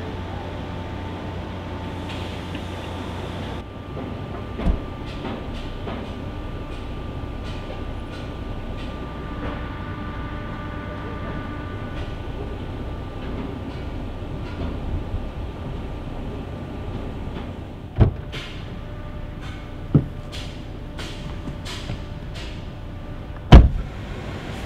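Inside a Hyundai car's cabin, the idling car makes a steady low hum. Over it come a few heavy thumps as the trunk lid and a rear door are shut, the loudest near the end.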